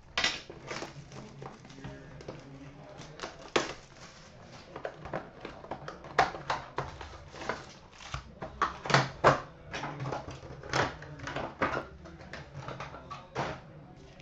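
Hands opening a hockey-card hobby box and handling its card packs: irregular crinkling, rustling and sharp clicks of wrappers and cardboard, with several louder snaps spread through.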